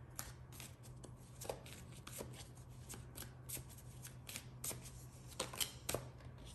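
A deck of tarot cards being shuffled by hand, with quiet, irregular card flicks about three times a second.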